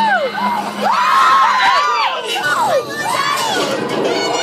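Several riders screaming together on the Tower of Terror drop ride, overlapping shrieks rising and falling in pitch, with a lull near the three-second mark.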